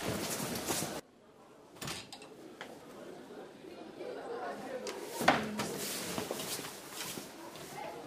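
A few soft knocks and clicks in a quiet room as a wooden door is opened and people step through, the clearest knock about five seconds in.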